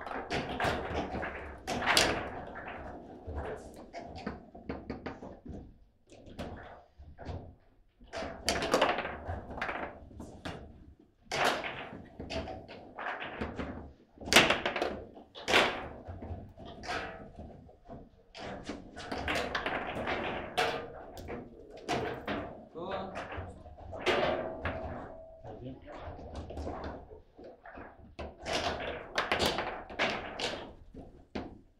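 Table football in play: irregular sharp knocks and thunks of the ball being struck by the rod figures and bouncing off the table walls, with rods banging at their stops.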